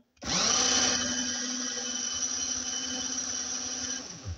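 Small electric motor of a LEGO car spinning up quickly, then running at a steady high-pitched whine.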